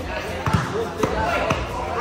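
A ball thudding hard three times, about twice a second, with a crowd of voices chattering underneath.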